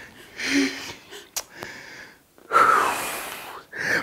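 A person breathing heavily, with no words: a short breath about half a second in, then a longer, louder breath out from about two and a half seconds in.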